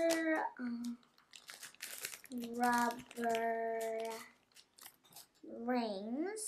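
A young girl singing to herself without words: a held note near the start, two long steady notes in the middle and a rising slide near the end. Light clicks and rustles of small cardboard and wooden kit pieces being handled fill the gaps.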